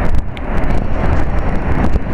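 Wind buffeting the microphone over the rumble of a passing train, with scattered short clicks.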